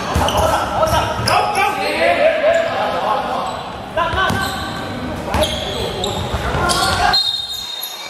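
Basketball bouncing on a hardwood court during play, mixed with players' shouts, all echoing in a large sports hall.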